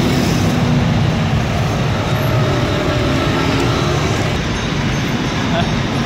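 Road traffic: a motor vehicle's engine running close by over steady traffic noise.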